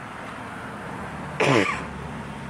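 A man coughs once, sharply, about a second and a half in, over a steady low street background.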